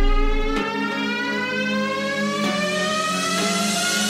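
Electronic dance music build-up: a long synth sweep rising steadily in pitch over held low notes. The deep bass cuts out about half a second in.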